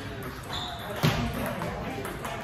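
Table tennis rally: the ping-pong ball knocking off the bats and table, the loudest a single sharp knock about a second in, in a large reverberant hall.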